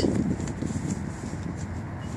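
Steady low outdoor background noise with no distinct sound events.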